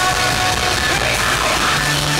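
Rock band playing live: a loud, steady wall of guitars and drums, with no sung words.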